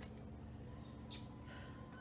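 A few faint, short, high bird chirps about a second in, over a low steady background hum.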